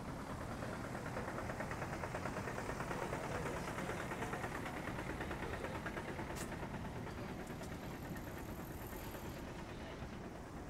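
Street traffic: a motor vehicle's engine passing close, swelling to its loudest about three seconds in and then fading, over steady road noise.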